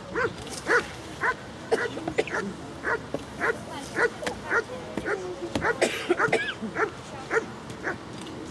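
German Shepherd Dog barking repeatedly at a protection helper in the hold-and-bark guarding exercise, about two barks a second.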